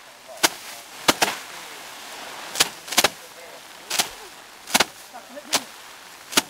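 Sheaves of rice stalks being beaten by hand against a slatted wooden threshing bench to knock the grain loose. About nine sharp cracks come at uneven intervals from several people striking in turn, some nearly doubled.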